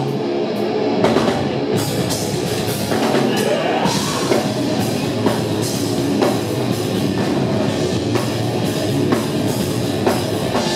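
Melodic death metal band playing live: heavy distorted electric guitars over a pounding drum kit, loud and continuous.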